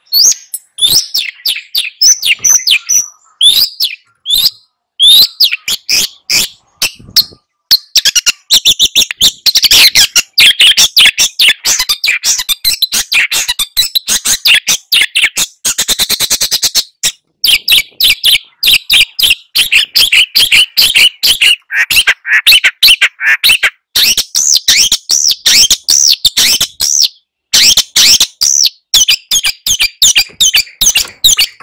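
Long-tailed shrike (cendet) song: a fast, near-continuous stream of varied chattering and chirping notes, with a quick, even rattle about halfway through and a few brief pauses.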